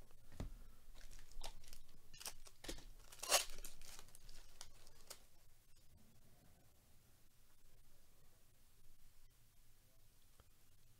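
Foil wrapper of a baseball card pack torn open and crinkled, a run of crackles and rustles that is loudest about three seconds in. The rest is fainter handling of the pack's card stack.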